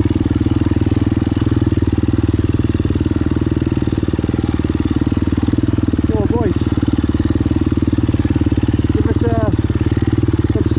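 Enduro dirt bike engine running at a steady, even pitch while riding along a trail. Short bursts of a person's voice come over it twice in the second half.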